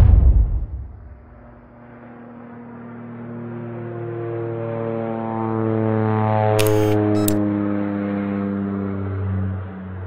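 Soundtrack sound effects: a loud impact at the start that dies away over about a second, then an engine drone whose pitch drifts slowly as it swells and fades, like a vehicle passing. Two sharp clicks sound near the middle.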